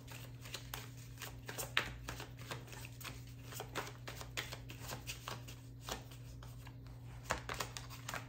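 A tarot deck being shuffled by hand: a string of short, irregular card snaps and rustles. A faint steady hum runs underneath.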